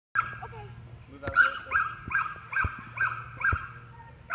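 A young dog barking in a steady string of short, sharp barks, about two and a half a second from a little over a second in, while it runs an agility course.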